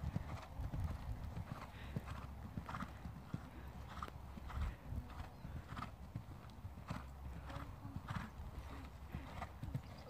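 Hoofbeats of a ridden horse moving around a sand arena, a steady run of soft thuds roughly every half second to second, over a low steady rumble.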